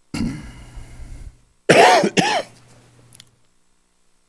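A person coughing and clearing their throat: a rough rasp for about a second, then two short, loud coughs about two seconds in.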